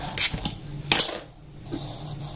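Beer bottle being opened, its metal crown cap prised off: two sharp metallic clinks under a second apart.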